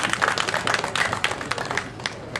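Audience applauding, a dense patter of many hands clapping that thins out near the end.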